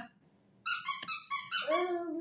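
A rubber squeaky toy squeezed several times in quick succession, giving high-pitched squeaks that start about half a second in. A lower voice joins near the end.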